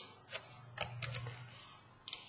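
Computer keyboard and mouse clicking: about five faint clicks in the first second and a half.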